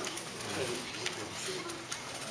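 Quiet murmuring voices in a room full of waiting children, with a few faint, short wavering voice sounds.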